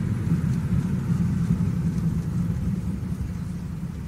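Steady low rumble of engine and road noise heard from inside a moving taxi's cabin, easing slightly near the end.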